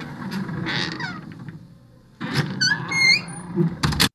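Recorded sound-effect audio played through the presentation: a noisy rush with sharp knocks that fades, then a second burst with several short squeaky rising chirps, cut off abruptly.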